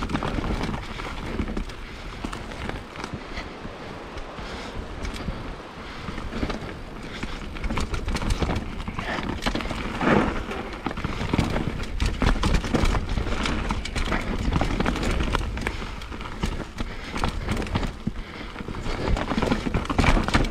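Mountain bike ridden fast down a dirt singletrack: tyres running over dirt, roots and rocks and the bike rattling and knocking over the bumps, over a steady low rumble. It gets louder and busier about six seconds in.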